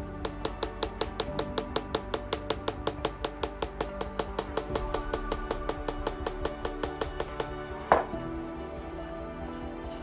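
Quick, even tapping on a tall glass of foamy Ramos-style gin fizz, about five or six light, ringing taps a second for some seven seconds, to help the foam separate and settle. It ends with one louder knock as the glass is set down on the bar, over soft background music.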